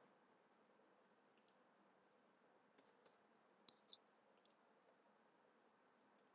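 Faint, irregular clicks of a computer keyboard and mouse as values are entered into a form: about nine light clicks between about a second and a half and four and a half seconds in, with near silence around them.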